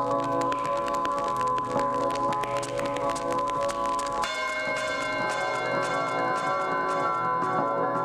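Old country steel-guitar record played from vinyl, slowed right down so it sounds like chimes: many ringing tones held and overlapping, over a constant fine crackle of clicks. About halfway through, a new, higher set of chiming tones comes in.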